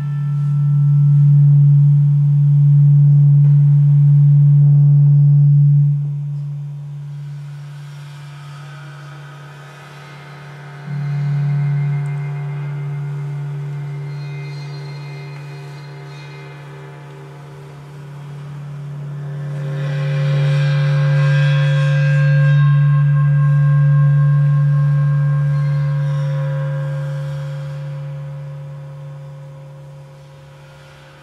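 Improvised live music of gongs over a low drone. A loud steady low drone fades out about six seconds in and comes back abruptly around eleven seconds, under sustained, slowly pulsing metallic overtones that swell about twenty seconds in and die away near the end.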